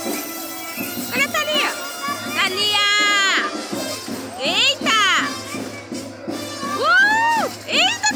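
Children shouting and squealing in high voices while playing, with music playing in the background.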